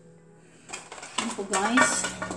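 Light clinks and scrapes of things being handled and set down against a glass serving bowl, starting about two-thirds of a second in. A wavering pitched sound rises beneath them in the second half.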